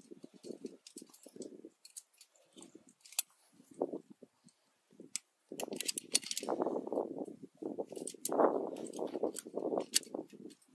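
Climbing gear clinking at a climber's harness as he moves up the rock: scattered sharp metallic clicks of carabiners and quickdraws over irregular scuffing and rustling, which gets denser and louder about halfway through.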